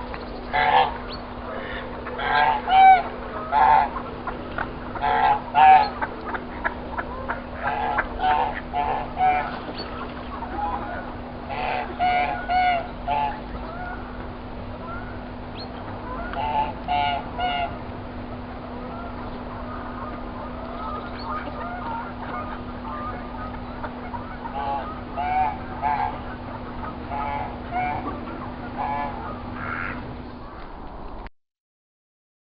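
Domestic goose honking over and over in runs of short calls. The calls are thickest in the first half, fall off in the middle and pick up again near the end, over a steady low hum.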